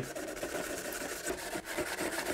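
A Scotch-Brite abrasive pad rubbed back and forth over the painted plastic body shell of an RC crawler: a quiet, scratchy scrubbing as it wears through the black paint to weather it.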